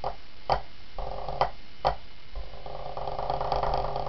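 Pipe band snare drum played solo: crisp single strokes about half a second apart, a short roll about a second in, and a long roll starting a little past two seconds in that carries on past the end.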